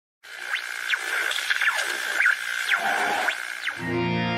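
Electronic intro sting: a hissing, static-like noise with a steady high tone and several quick swooping pitch sweeps, giving way near the end to music with low sustained notes.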